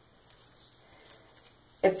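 Faint crinkling and light ticks of metallic curling ribbon being looped by hand, then a woman's voice begins near the end.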